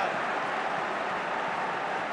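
Steady noise of a large football crowd in the stands.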